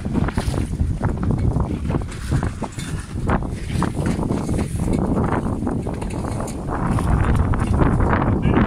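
Heavy wind noise rumbling on the microphone aboard a small boat on choppy water, with the wash of the water and irregular short knocks and splashes mixed in.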